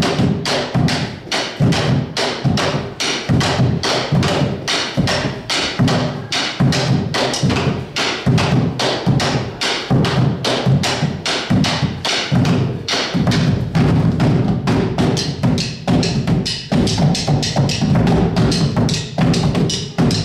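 Two large Argentine bombo legüero drums beaten with sticks in a fast, driving rhythm of several strokes a second. Deep booms from the skin heads mix with sharp clicks of sticks on the wooden rims.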